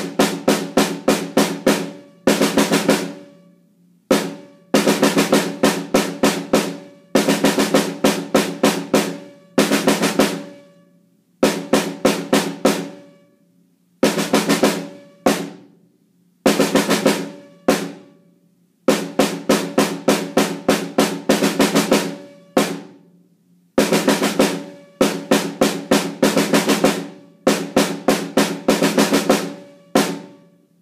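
Snare drum played with sticks in five-stroke rolls (two double strokes and a single), in quick phrases broken every couple of seconds by brief pauses where the drum rings out.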